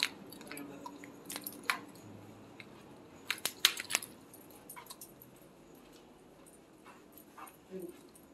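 Maltese dog on a leash moving along a carpeted hallway: scattered short, sharp clicks and rustles, bunched about one and a half and three and a half seconds in.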